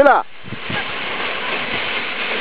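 Steady wind noise on the microphone, following a brief exclaimed "Ah" at the very start.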